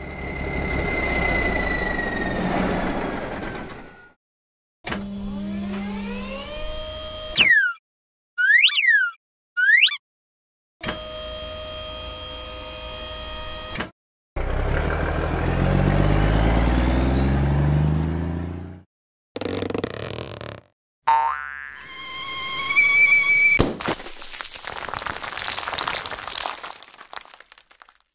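A run of cartoon sound effects: a rising sliding tone, three quick boings, then a cartoon truck engine running for about four seconds. Near the end comes a sharp crack followed by a noisy scattering as a toy surprise egg breaks apart.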